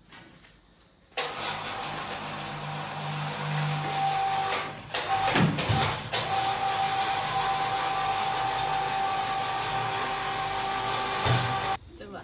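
An electric machine motor in a cotton-quilt workshop starts suddenly about a second in and runs steadily with a constant whine over a low hum, dipping briefly near the middle before cutting off just before the end.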